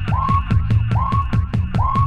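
Breakbeat electronic dance music from a DJ set: drums and bass with a rising, siren-like synth sweep repeating a little more often than once a second.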